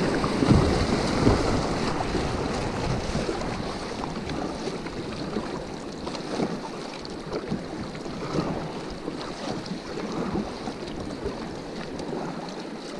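River water rushing and splashing around a kayak's plastic hull through a riffle, loudest in the first couple of seconds and easing as the water calms, with wind buffeting the microphone and occasional small splashes.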